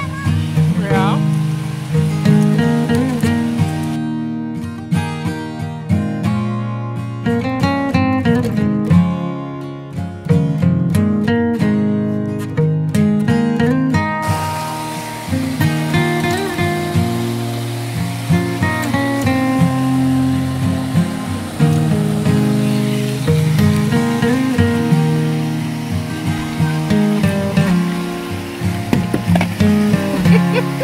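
Background music led by acoustic guitar, playing steadily throughout.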